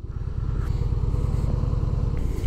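Harley-Davidson Heritage Softail's air-cooled Twin Cam 88B V-twin running steadily at low revs with a fine, even pulse, the bike rolling slowly in a traffic jam.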